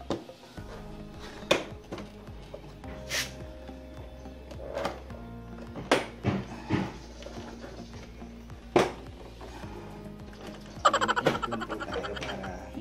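Sharp plastic clicks and knocks, about seven of them spread out, then a quick rattling run of clicks near the end, as the plastic front headlight panel of a Yamaha Mio i125 scooter is worked loose from its clips. Background music plays throughout.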